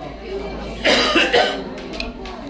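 A person close to the microphone coughing twice in quick succession, about a second in, over quiet background talk.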